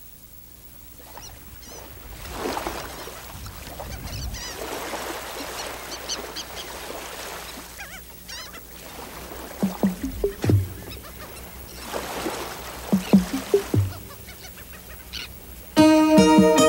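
Recorded intro of a song: birds calling over a wash of noise that swells and fades, with a few low thuds in the second half.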